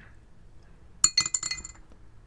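Dice thrown onto a hard surface. About a second in they clatter in a quick run of sharp, ringing clinks that last under a second.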